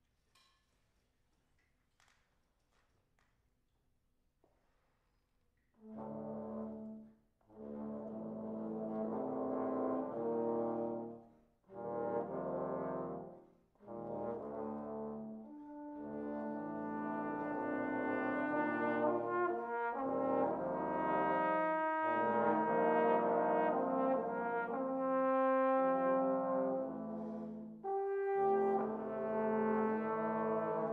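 Trombone quintet (a solo trombone with a trombone quartet) playing. After about six seconds of near silence it begins with a few held chords separated by short breaks, then plays continuously and grows louder.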